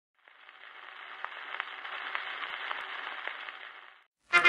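Surface noise of a 78 rpm shellac record in its lead-in groove before the music: a steady hiss with scattered clicks. It fades in just after the start and fades out just before the end.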